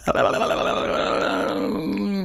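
A man's voice holding one long, low hesitation hum, a drawn-out 'mmm' or 'ööö' while he searches for what to say, its pitch steady and sinking slightly toward the end.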